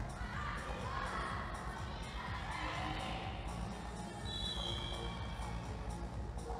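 A basketball bouncing on a wooden gym floor amid the voices and shouts of children in a reverberant sports hall.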